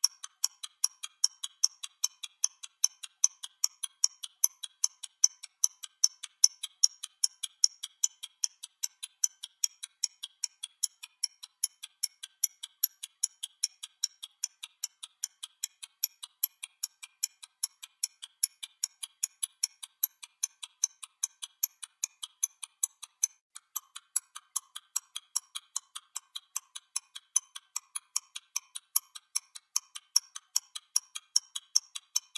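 A stopwatch ticking: fast, even ticks, several a second, thin and high-pitched, running steadily without a break.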